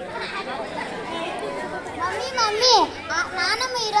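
Children's voices talking and calling out, with one high voice swooping down in pitch a little past the middle.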